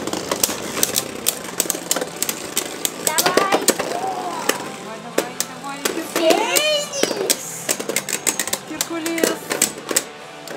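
Two Beyblade Burst spinning tops clattering in a plastic stadium: a dense run of quick, irregular clicks and knocks as they hit each other and the stadium wall. Short voice calls come in briefly around three seconds and again around six to seven seconds.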